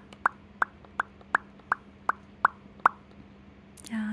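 Quaker parrot making a rapid, even series of short clicks, about three a second, over a faint steady low hum.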